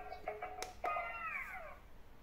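Pikachu-shaped electronic speed-push pop-it game playing a beeping electronic tune. About half a second in there is a click of its button, then a falling electronic tone as the game switches off.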